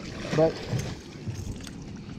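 Water splashing as a hooked redfish thrashes at the surface beside the boat, under a steady hiss of wind and water, with a man's spoken word about half a second in.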